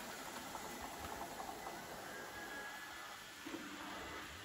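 ILIFE V5s Pro robot vacuum cleaner running: a steady, quiet hiss of its motor and brushes.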